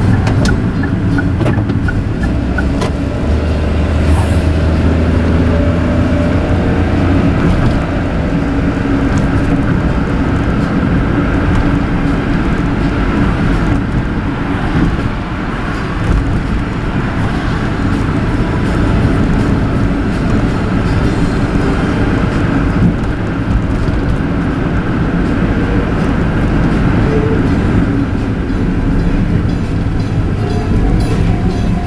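Steady engine and road noise of a car, heard from inside the cabin while driving.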